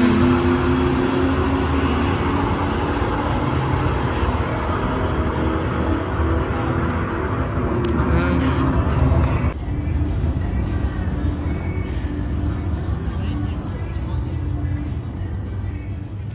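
A car's engine at full throttle making a drag-strip pass, heard from the starting line as it runs away down the track. The sound drops off sharply about nine and a half seconds in.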